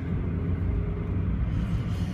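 Car cabin noise while driving: a steady low rumble of engine and road.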